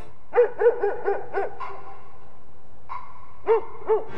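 A dog barking: a quick run of five barks, a pause, then two more barks near the end.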